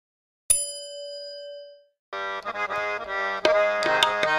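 A single bright bell ding about half a second in, ringing out for over a second: a notification-bell sound effect. From about two seconds in, harmonium music starts, with drum strokes joining near the end.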